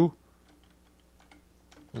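A few faint, scattered keystrokes on a computer keyboard as text is typed.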